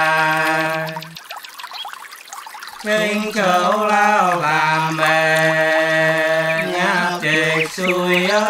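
Unaccompanied Soóng cọ folk singing of the Sán Chỉ people: one voice holding long, steady notes. It breaks off about a second in and comes back in just under three seconds in.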